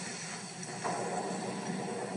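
Quiet, steady background noise from a film's soundtrack, an even hiss without distinct tones, lifting slightly about a second in.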